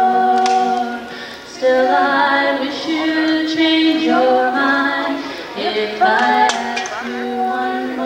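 A girl singing held notes into a microphone, accompanied by a strummed acoustic guitar.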